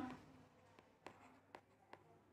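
Near silence with a few faint, short ticks from a stylus tapping on a tablet screen as a word is written.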